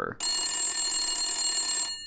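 Old-style telephone bell ringing, a sound effect laid over the picture: one continuous ring of nearly two seconds that starts suddenly and stops, the ringing tones trailing off just after.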